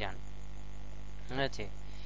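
Steady electrical mains hum picked up by the recording microphone, with one short spoken syllable about a second and a half in.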